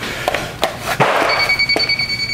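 A few light knocks as a moisture meter is set against the base of a kitchen cabinet, then its steady high beep starts about a second and a half in and holds, the meter signalling that the cabinet bottom is very wet.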